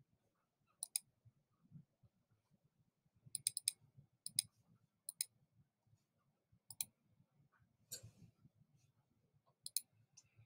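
Faint, sharp computer mouse clicks, mostly in close pairs, at irregular intervals, with a quick run of several clicks about three and a half seconds in.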